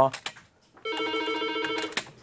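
Office desk telephone ringing: one fast, trilling electronic ring that starts about a second in and lasts just over a second.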